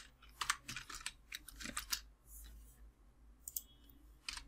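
Computer keyboard being typed on: a quick, irregular run of keystroke clicks in the first half, then a couple of clicks near the end.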